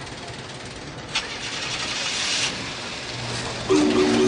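A car engine cranking and starting, with a click about a second in followed by a rising rush of noise. Sustained musical notes come in near the end.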